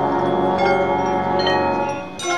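Marching band playing: chimes and mallet keyboards ringing over low held chords.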